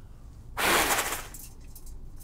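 A single hard puff of breath blown at a metal pinwheel, a whoosh of air lasting under a second that starts about half a second in and then fades.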